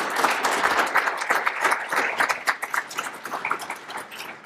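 Audience applauding, the clapping thinning out and getting quieter toward the end.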